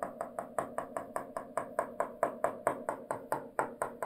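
Stylus tapping rapidly on an interactive display screen as dots are drawn one after another: a steady run of short, sharp taps, about five a second.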